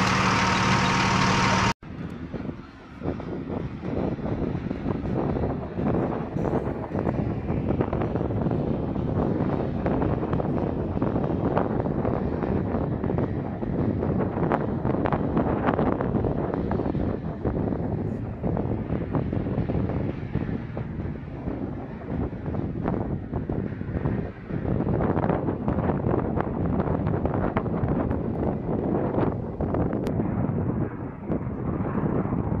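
A fuel tanker truck's engine idling with a steady hum, cut off suddenly about two seconds in. Then wind buffeting the microphone over the low rumble of an MQ-9 Reaper's turboprop engine as the drone rolls along the runway.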